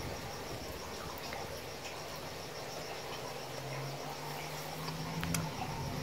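Insects chirping steadily in the background, an evenly pulsed high trill, with a faint low hum for a couple of seconds toward the end.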